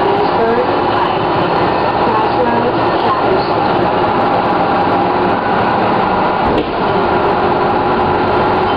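1997 Orion V transit bus with a Detroit Diesel Series 50 diesel engine, running steadily while under way, with a brief dip and click about two-thirds of the way in. Its turbocharger is described by the owner as slightly overblown.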